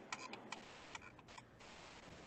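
Near silence: faint background hiss with a few soft clicks in the first second and a half.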